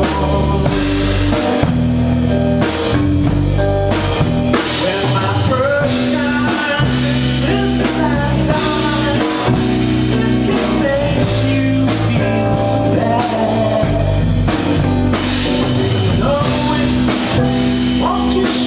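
Small live band playing an instrumental passage of a soft-rock song, with guitar and keyboard over a steady beat.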